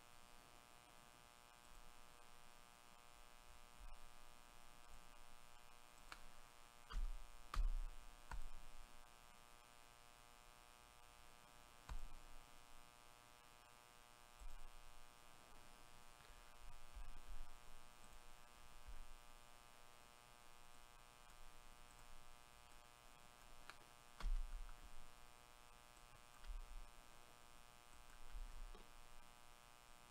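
Faint, steady electrical mains hum, with a few soft low thumps, loudest about seven to eight seconds in and again near twenty-four seconds, and scattered faint clicks.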